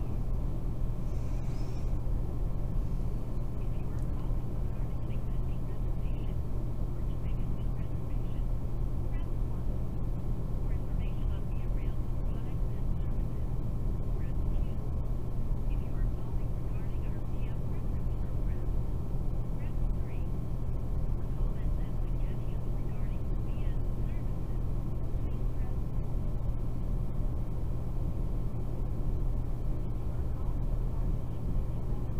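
A steady low hum with background noise at an even level, with faint, indistinct voices.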